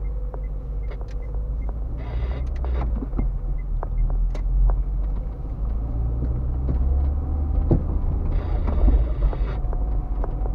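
A car driving slowly, heard from inside the cabin: a steady low rumble of engine and tyres, with scattered small knocks and rattles and two short bursts of hiss, about two seconds in and near the end.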